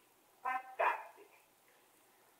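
Two short, sharp vocal calls a little under half a second apart, the first pitched and the second harsher.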